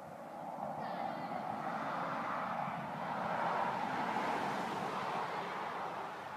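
A passing vehicle: a steady rushing noise that swells to a peak about four seconds in and then fades.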